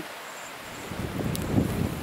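Wind buffeting the microphone outdoors: a low, fluttering rumble that rises about a second in.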